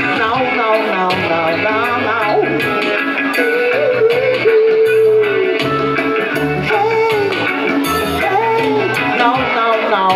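A woman singing live with a band, her voice carrying the melody over bass guitar and guitar, with one long held note about halfway through.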